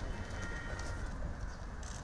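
Outdoor ambience of a group walking on paving: scattered footstep clicks, a faint bird call and a steady low rumble.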